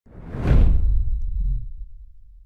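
Logo-reveal whoosh sound effect that swells to a peak about half a second in, then leaves a deep low rumble that fades away.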